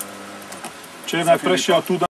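A man's voice talking, starting about a second in, after a quieter stretch of steady low background hum.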